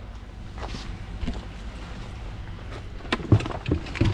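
Hiking gear being handled in a hatchback's cargo area: a few scattered light knocks and clicks, the loudest a little after three seconds in.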